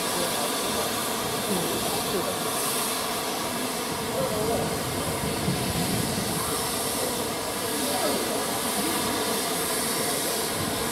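Steam hissing steadily from GWR Castle class steam locomotives standing in steam, with faint crowd chatter underneath.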